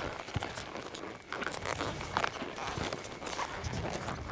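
A cutting horse's hooves scuffing and stepping through soft, deep arena dirt, with irregular rustling of the rider's clothing and tack as the horse moves.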